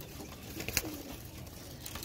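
Domestic pigeons cooing faintly, with a short click near the middle.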